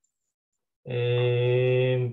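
A man's voice holding a long, level hesitation sound ('eeh'), starting nearly a second in and held for over a second without changing pitch.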